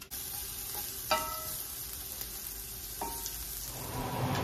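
Sliced red onion sizzling in a hot stainless steel skillet, the sizzle starting suddenly as it goes into the pan. Two short metallic clinks of a utensil against the pan ring out about a second in and near the end.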